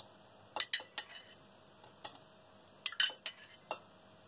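A metal spoon clinking against a ceramic mug and a stainless steel pot as spoonfuls of water are ladled from the mug into the pot: a series of short, light clinks at an uneven pace.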